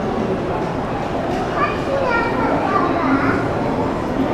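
Crowd chatter: many people talking at once, with a higher-pitched voice standing out from the babble between about one and a half and three seconds in.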